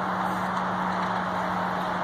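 Steady background noise with a constant low hum underneath, unchanging throughout; no distinct knocks or handling sounds stand out.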